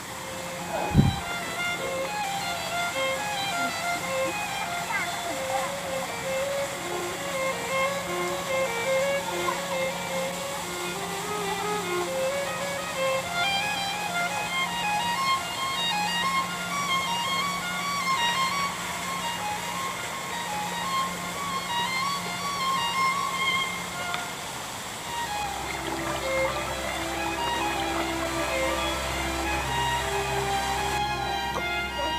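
Instrumental background music: a melody of short notes over a steady held low note, changing to a new chord with a deeper bass about 25 seconds in. A short thump about a second in is the loudest moment.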